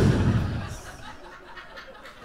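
Audience laughter and chuckling, loudest right at the start and fading over the first second into scattered chuckles.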